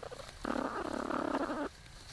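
Young platypuses in their nesting burrow: one rough, raspy sound lasting about a second, starting about half a second in.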